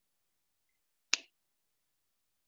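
A single short, sharp click about a second in, in otherwise near-silent audio.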